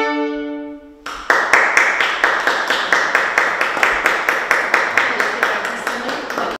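Two violins hold a final note that fades out about a second in, then audience applause begins, with claps coming in a steady rhythm of about four a second.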